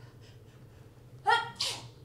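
A woman sneezing once, about a second and a quarter in: a short voiced 'ah' followed at once by a louder, breathy 'choo'.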